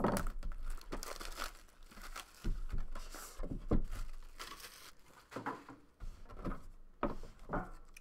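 Plastic wrapping being torn off and crumpled by hand while a trading-card box is opened: irregular crinkling and crackling with a few sharper clicks.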